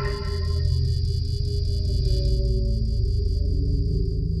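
Experimental electroacoustic music of accordion with sampler and effects: a deep sustained drone under several held tones, with a high steady tone pulsing about five times a second. A brighter cluster of notes fades away in the first second.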